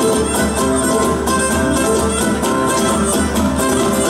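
Live instrumental Cretan sousta dance music: a bowed string lead over plucked laouto and drums, playing a steady dance rhythm with no singing.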